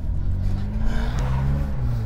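The Carver One's small kei-car engine revving up and rising in pitch as the tilting three-wheeler pulls away, with a brief rushing noise about a second in.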